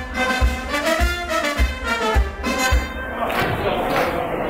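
Brass band with saxophone and trumpets playing a tune over a steady bass-drum beat, just under two beats a second. The music stops about three seconds in, leaving the murmur of a crowd's voices.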